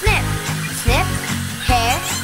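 Hand-held hair dryer blowing steadily, under an instrumental stretch of a children's song with a steady beat and repeating swooping synth tones.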